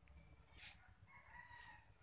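A rooster crowing faintly in the second half, with a short hiss just before it.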